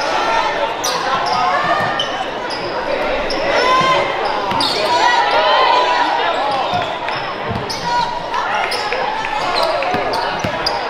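Basketball game heard in a reverberant gym: many overlapping voices of players and spectators calling out, with a few thumps of the ball bouncing on the hardwood floor.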